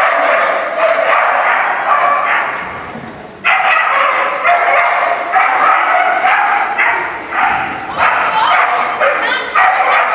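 A dog barking rapidly and repeatedly in quick strings of short barks, with a brief break about three seconds in before the barking starts again suddenly.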